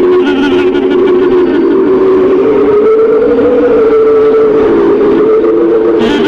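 Clarinet playing a Hindustani classical raga with harmonium accompaniment: a long held note that glides slowly upward about two to three seconds in and is then sustained.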